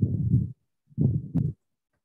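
Two muffled, low-pitched bursts of noise picked up on a headset microphone, each about half a second long with a short silence between them.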